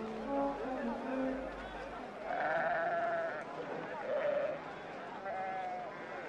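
Sheep bleating, three wavering calls about two, four and five seconds in, after a few held notes of film music end.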